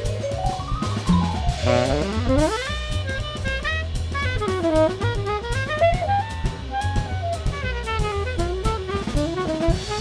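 Jazz tenor saxophone soloing in fast runs of notes that climb and fall, starting about a second and a half in, over a drum kit.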